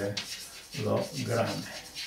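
Chalk scratching on a blackboard in short strokes as a word is written out, mixed with a man's voice sounding out syllables.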